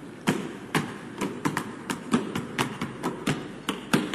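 A basketball being dribbled on a hard court, bouncing about twice a second in a steady rhythm.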